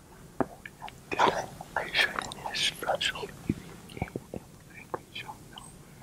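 Hushed whispering, with a few faint clicks in between.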